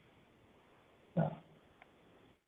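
A short grunt-like vocal noise from a call participant about a second in, heard through narrow video-call audio over faint line hiss.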